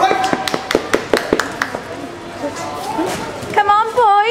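A quick, irregular run of sharp smacks over the first second and a half, then voices in a large hall, with one loud voice with a wavering pitch near the end.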